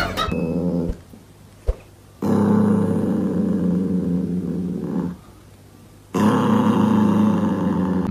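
Small dog growling in long, low growls, twice with a short pause between: a warning growl while guarding its chew from a budgie.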